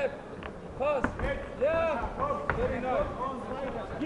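Shouting voices from ringside calling over one another, with a few sharp thuds of gloved punches landing during a heavyweight boxing bout.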